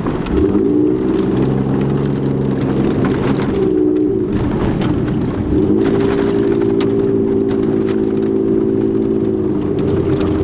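A Toyota Tacoma PreRunner pickup's engine heard from inside the cab while driving fast on a dirt road, over the rumble of tyres on dirt. The engine note climbs at the start, eases off about four seconds in, then picks up again and holds steady before dropping near the end.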